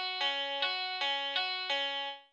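Clean electric guitar riff from GarageBand's Classic Clean software instrument, single plucked notes alternating between a higher and a lower pitch about three times a second.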